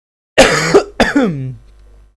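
A person clearing their throat: two short, loud, rough bursts about half a second apart, the second falling in pitch.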